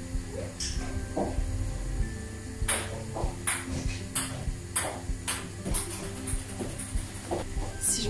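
Coins clinking: about eight sharp metallic clicks spread over several seconds, starting about three seconds in, as a coin is picked out by hand. Quiet background music plays underneath.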